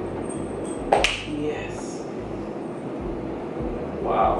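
A single sharp click about a second in, over quiet room noise.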